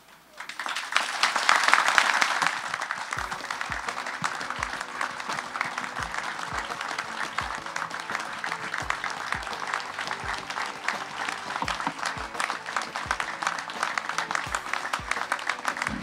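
Audience and people on stage applauding, loudest in the first couple of seconds. Music with a steady beat comes in under the clapping about three seconds in.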